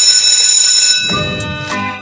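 Electric school bell ringing with a loud, steady metallic ring that stops about a second in. Intro music with a melody and a beat then takes over.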